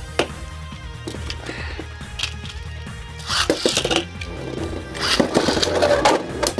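Background music with a steady bass line under the clatter of plastic Beyblade Burst spinning tops in a stadium. Sharp clashes of the tops hitting each other come in clusters about three seconds in and again near the end.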